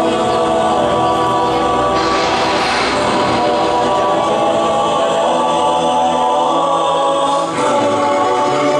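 Stage music with a choir of voices holding sustained chords.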